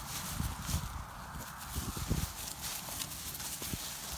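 Footsteps of a handler and a German shepherd moving through dry grass on a tracking line: uneven soft thumps with a light rustle of grass.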